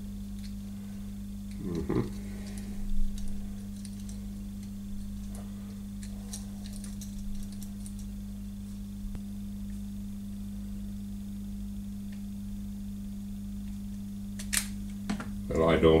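A steady low electrical hum, with a few faint small metallic clicks as a tiny screw and tin washer are handled and fitted into a stepper motor's back plate.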